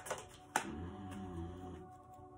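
Tarot deck being shuffled by hand, with a few sharp card clicks, the clearest about half a second in, over a quiet sustained tune.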